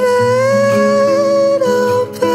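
A soft, chill pop song: a male voice sings one long, slightly wavering held note on the chorus line, then moves to a new note near the end, over a low guitar and bass accompaniment.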